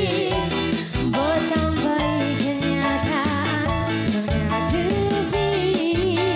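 Live band music amplified through a PA sound system: electric guitar, keyboard and drums over a steady beat, with a wavering sung melody on top.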